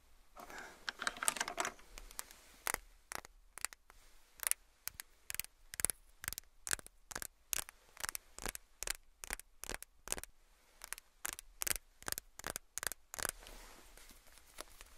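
A mascara tube handled close to the microphone: a short rustle in the first two seconds, then a run of sharp clicks and taps, about two or three a second.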